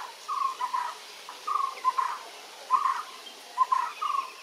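A bird calling over and over, about once every second, each call a short note followed by a quick pair of notes.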